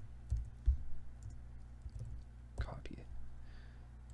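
Computer keyboard keystrokes, a few separate taps spaced irregularly, over a low steady hum.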